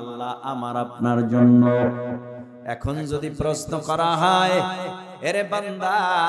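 A man's voice chanting a Bengali Islamic sermon (waz) in a drawn-out, wavering melody, through microphones, with long held notes broken by short pauses.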